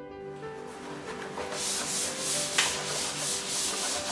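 Hand tool scraped back and forth along the edge of a leaded stained-glass panel, in quick rasping strokes about three a second, with one sharp click a little past halfway.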